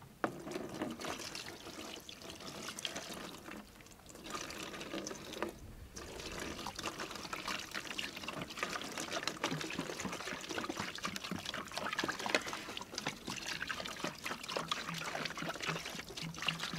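Distilled white vinegar poured from a plastic gallon jug into a plastic tub holding cast-iron waffle iron parts, splashing and trickling. The flow falters briefly about four and six seconds in, then runs fuller.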